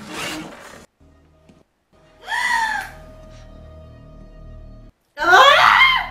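Quiet music with a steady held note, broken twice by short, loud, high-pitched vocal cries. The first, about two seconds in, falls in pitch. The second, near the end, rises and is the loudest.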